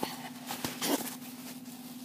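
Soft rustling and a few light clicks as toilet paper is pulled and handled, with one brief rustle just before a second in, over a steady low electrical hum.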